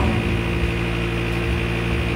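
Steady electrical mains hum from the audio system: a low buzz with a stack of even overtones, over a layer of hiss.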